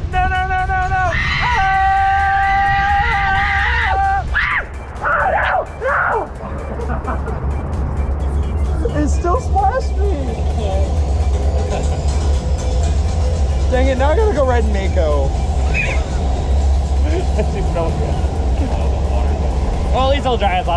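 Raft-ride riders yelling: a long, steady held cry for the first few seconds, then laughter and excited shouting, over a continuous low rumble of rushing water and wind on the microphone.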